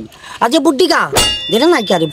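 A man talking, with a sudden metallic clang about a second in that rings on as a high, steady tone for nearly a second.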